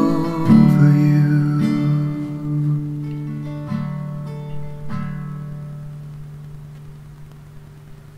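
Acoustic guitar playing the last bars of a slow song: a chord strummed just after the start, then a few single notes plucked a second or two apart, each left to ring and fading away toward the end.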